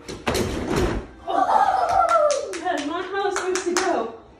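Aerial silks fabric rushing and swishing as the performer falls through a drop, with low thuds, then a long drawn-out 'ohhh' sliding down in pitch, with several sharp clicks over it.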